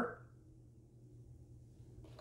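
Near silence: faint room tone with a low steady hum, just after a spoken word ends at the very start.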